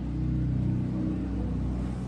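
A steady low mechanical hum with evenly spaced overtones, holding at a constant level.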